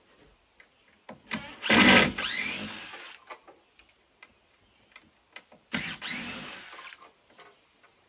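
A power drill runs twice, each run about a second long, starting loud and rising in pitch as it goes, with small clicks and knocks of handling between the runs.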